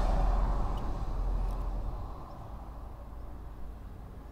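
Low rumble of a passing motor vehicle, fading away over the first two seconds and leaving a faint steady hum.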